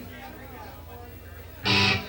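Quiet stage sound between songs, then one short, loud electric guitar strum near the end.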